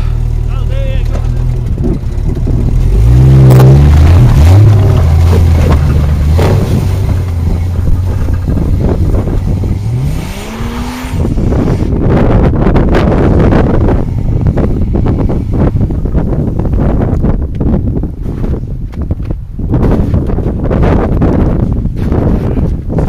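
A 4x4's engine running and revving under load while the wheels try to find grip in deep snow, the revs climbing at about ten seconds. After that a rough, crackling noise takes over as the vehicle churns forward along the snowy rut.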